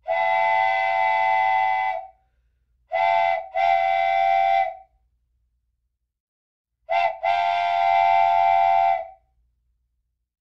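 Train whistle sound effect. It gives a steady, chord-like blast of about two seconds, then two more whistles, each a quick toot running into a blast of one to two seconds, with silence between them.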